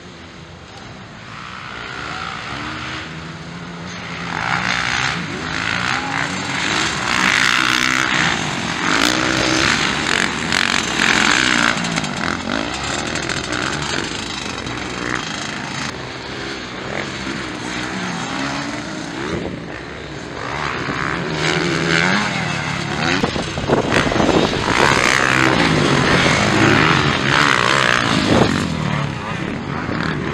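Motocross dirt-bike engines revving hard and shifting as riders race past, the pitch climbing and dropping with each throttle change. The bikes are loudest from about four to twelve seconds in and again from about twenty seconds on.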